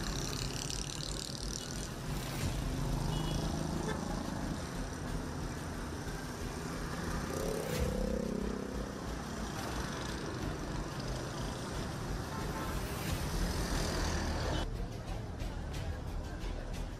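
City street traffic: cars and motorcycles running past with a steady road noise, and an engine note rising and falling in pitch about halfway through.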